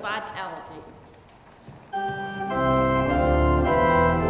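About two seconds in, an organ starts playing sustained chords, and deep bass notes join about half a second later.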